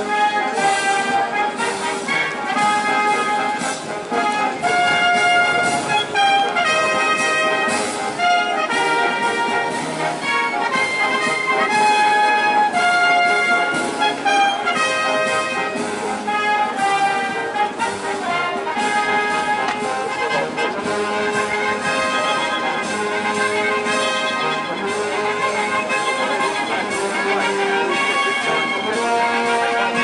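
Brass band music playing continuously, a tune of held and changing notes carried by trumpets and trombones.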